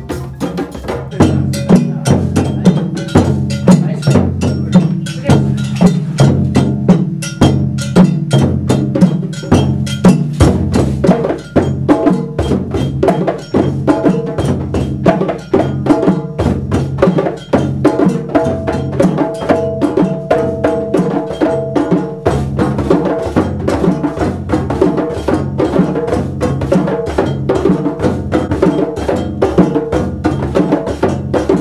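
A group of djembe hand drums playing a fast rhythm together, many strokes a second, with deep bass tones underneath; the full group comes in louder about a second in.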